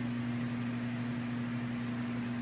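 Steady hum and airy hiss of a walk-in flower cooler's refrigeration fans, with an unchanging low drone.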